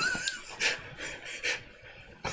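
A person's breath: two short, breathy puffs about half a second and a second and a half in, like panting or stifled laughter.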